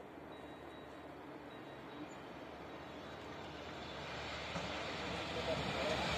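Express passenger train approaching on electrified track, its rumble growing steadily louder.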